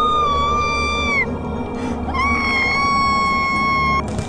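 A young woman screaming in distress, two long high held screams: the first breaks off about a second in and the second starts about two seconds in. A low droning music bed runs underneath.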